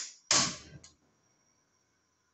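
A tabletop gas cooker's ignition knob clicks, then the burner catches with a short whoosh that fades within about half a second. A faint steady hiss of the lit gas flame follows.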